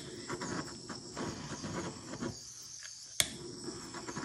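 Faint handling sounds of objects on a table, then one sharp click about three seconds in, over a faint steady high-pitched whine.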